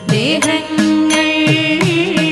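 Thiruvathira paattu, a Kerala folk song, sung in a Carnatic style with a gliding, ornamented melody over a steady beat of sharp percussive strokes, about three a second.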